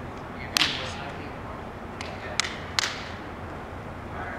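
Hands slapping a Spikeball and the ball bouncing off the round trampoline net during a rally: a loud hit about half a second in, then three quick hits around the three-second mark, each ringing on in a large echoing indoor hall.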